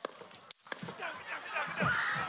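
Two sharp gunshot cracks about half a second apart, then the crowd starting to scream and shout in alarm.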